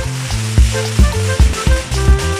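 Music with a heavy, steady beat, about two beats a second, over the continuous hiss of a ground fountain firework spraying sparks.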